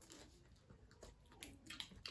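Near silence: quiet room tone with a few faint clicks in the second half, the small mouth sounds of a mussel being eaten from its shell.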